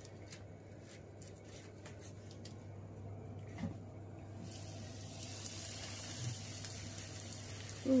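Breaded steak frying in hot oil in a pan: a few light clicks and knocks of handling, then a sizzle that comes in about halfway and grows.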